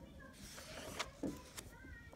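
A workbook's paper page being turned by hand: a faint rustle and slide of paper, with a sharp click about a second in.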